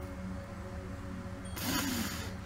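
A king cobra swallowing a large meal gives a short, forceful breathy exhale, a hiss about one and a half seconds in. Its breathing tube pokes out under the prey to push out air, and the big meal makes the snake breathe heavily. Quiet background music plays under it.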